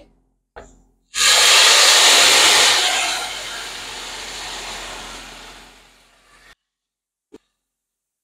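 Blended tomato liquid poured into a hot pan of oil-toasted rice, sizzling loudly as it hits and dying away over a few seconds as the liquid cools the pan. The sound cuts off abruptly near the end.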